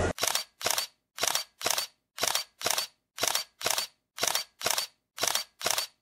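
A run of about a dozen short, sharp snapping hits, about two a second in loose pairs, with dead silence between them: an edited-in sound effect leading into an animated logo sequence.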